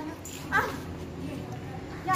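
A single short animal cry about half a second in, rising and then falling in pitch.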